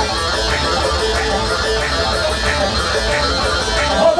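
Amplified instrumental wedding band music: a plucked-string melody over a steady beat of about three strokes every two seconds, with a deep bass pulse underneath.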